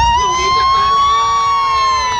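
A loud siren-like horn tone that swoops up, holds one steady pitch, and begins to slide down near the end.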